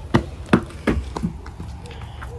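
Footsteps of children climbing concrete porch steps: four sharp steps roughly a third of a second apart, over a low steady rumble.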